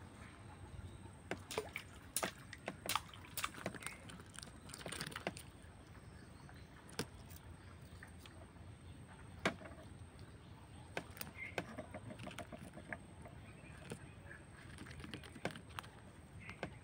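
Scattered light clicks and knocks from a bamboo fishing rod and hands being handled in a wooden boat, over a faint outdoor background.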